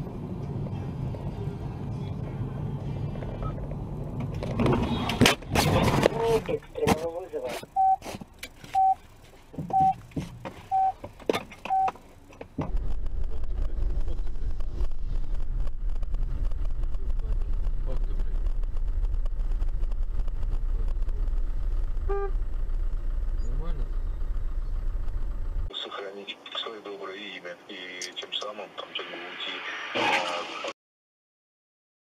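Dashcam sound from in-car vehicle driving: road rumble, then a cluster of sharp bangs around five seconds in, followed by five evenly spaced beeps about a second apart. After that comes a steady low vehicle rumble for over ten seconds, then voices near the end.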